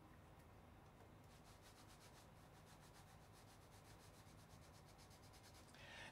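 Very faint, quick rubbing strokes of a sheet of paper slid back and forth under a 3D printer's nozzle, feeling for the slight drag that marks the right nozzle height while levelling the bed. The rubbing starts about a second in and goes at several strokes a second.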